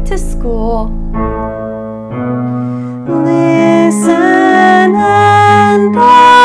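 A woman's singing voice finishes a phrase of a rock-musical song about a second in, leaving keyboard accompaniment playing held chords that change about once a second.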